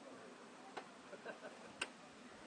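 Faint background with two short, sharp clicks about a second apart, the second louder.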